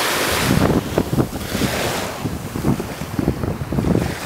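Small sea waves washing in at the shoreline, with wind buffeting the microphone in irregular gusts.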